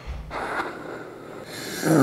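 A man sipping a hot drink from a glass mug, drawing air in with the liquid in a soft slurping breath that grows hissier in the second half. A low hummed 'mmm' starts right at the end.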